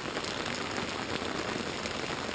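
Heavy rain falling steadily, heard from under an umbrella held over the microphone.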